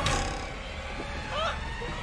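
A sudden hit that fades as the music cuts off, then a short high-pitched cry that rises and falls in pitch, with another brief cry near the end, during a near miss on the obstacle.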